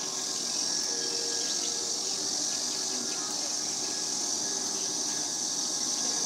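Steady, high-pitched drone of an insect chorus from the surrounding trees, with faint voices under it.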